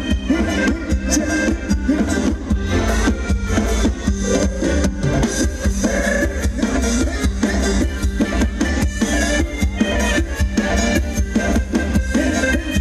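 Loud amplified dance-band music for Thai ramwong dancing, with a steady drum beat and heavy bass running without a break.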